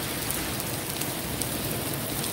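Steady rain falling on a wet street and sidewalk, an even hiss with no pauses.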